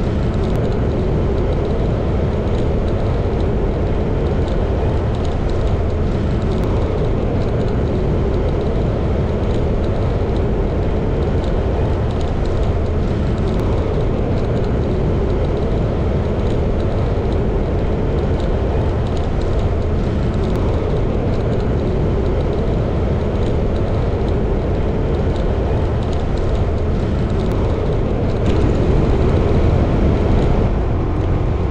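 Riding noise from a moving motorbike: wind rushing over the microphone mixed with engine and tyre noise. It is a steady rumble that gets a little louder near the end.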